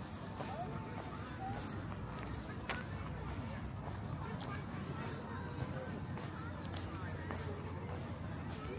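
Outdoor ambience on a walk: a steady low rumble under the walker's own footsteps on the path, with faint scattered short chirps.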